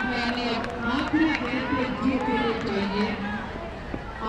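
A man talking steadily, with voices faintly in the background.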